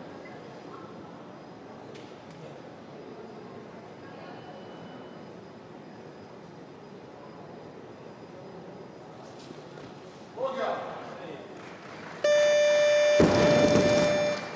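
Competition hall ambience while a weightlifter sets up at the bar. About ten seconds in there is a short shout. Then comes a loud, steady electronic buzzer tone of about two seconds: the referees' down signal for a successful lift. During it there is a heavy thud and a burst of crowd noise as the barbell is dropped onto the wooden platform.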